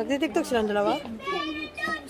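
Children's voices, high-pitched, calling out and chattering.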